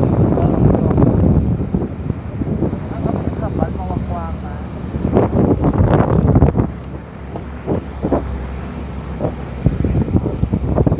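Jeepney engine running and the vehicle jolting and knocking over a rough dirt road, heard from its roof with wind on the microphone. Passengers' voices come and go above it.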